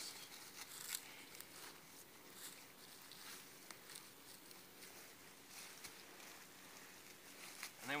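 Faint rustling and crackling of dry leaf litter as a person crawls feet first into a debris hut piled with leaves.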